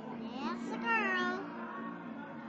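A short, high cry that glides up and then wavers for about half a second, over background music, heard through a television's speaker.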